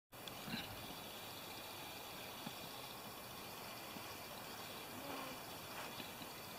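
Faint steady background hiss of an outdoor recording, with a few soft ticks.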